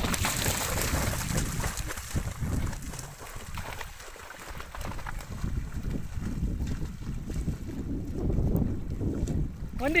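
Gusty wind rumbling on the microphone over open shallow water, rising and falling, with choppy water lapping.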